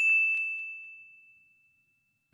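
A single bright ding sound effect for an animated 'Like' button: one high bell-like tone that rings out and fades away over about a second and a half.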